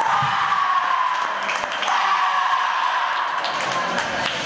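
Two long, high-pitched shouts in a row, each about two seconds long and sliding slightly down in pitch, typical of a foil fencer yelling after a touch.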